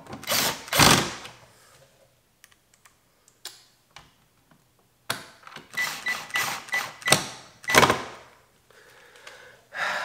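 Cordless drill driving screws into a plastic side-mirror housing: two short runs right at the start, then a quick series of short runs from about five to eight seconds, with a thin steady whine.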